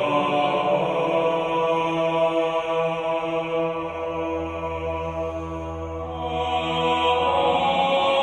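Background music of sustained, chant-like voices holding steady chords. A low drone joins about halfway through and drops out near the end.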